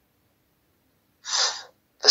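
A man's short, audible intake of breath a little over a second in, after near silence.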